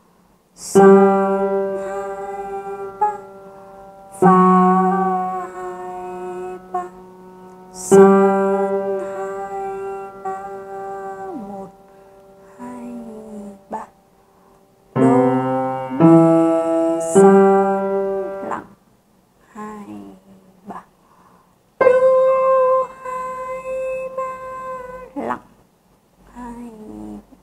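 Piano played slowly, one hand: single low notes held for several seconds each, a quick group of three notes about two-thirds of the way through, then a higher held note near the end. This is the left-hand part of a beginner's piece in 3/4, crossing over to a high note.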